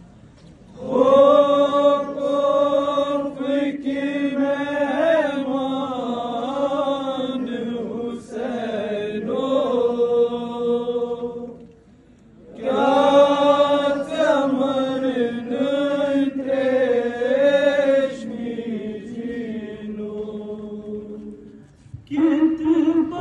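A man's voice chanting a Kashmiri nauha, a Shia mourning lament, unaccompanied, in two long drawn-out phrases with a short pause about halfway.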